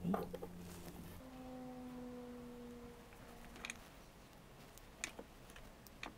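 A soft, steady pitched tone: a low note for about a second, then a higher held note that fades out by about four seconds in. A few light clicks follow.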